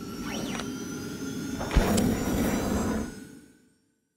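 Outro sound effect for an animated channel logo: a whoosh that swells up, a sharp hit a little under two seconds in, then ringing tones that fade out near the end.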